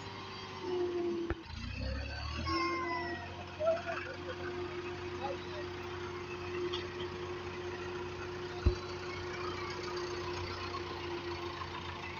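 Farm tractor's diesel engine running steadily as it tows a loaded dirt trolley, holding one steady droning tone. There is a brief lower-pitched change in the engine note near the start, and a single sharp knock about three-quarters of the way through.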